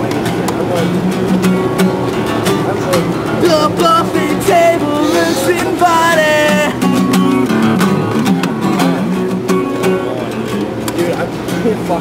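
A man singing with a strummed acoustic guitar, loud and rough, his voice rising to a higher, stronger passage about halfway through.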